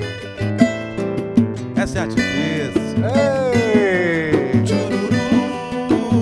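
Samba played live on a nylon-string acoustic guitar (violão), strummed and picked, with a pandeiro keeping the rhythm.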